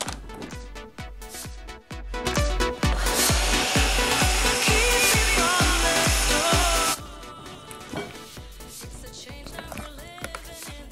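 Ninja countertop blender running on high, puréeing kidney beans and tahini into hummus. It starts a couple of seconds in, runs for about four and a half seconds and cuts off suddenly. Background music with a steady beat plays throughout.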